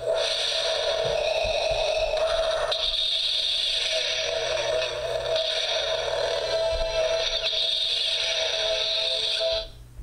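Star Wars Darth Vader alarm clock radio playing music through its small built-in speaker, cutting off suddenly near the end.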